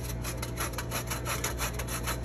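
A lemon rubbed against the sharp holes of a metal box grater, zesting it in quick, even rasping strokes, about eight a second.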